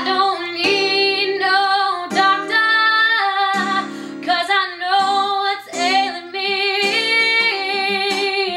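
A woman singing an acoustic blues song in long, held notes, accompanied by acoustic guitar.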